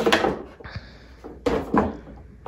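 A cardboard gift box and its clear plastic tray being handled: a soft scraping slide, then a sharp knock about one and a half seconds in as the tray holding a glass bottle and bowls is set down on a wooden table.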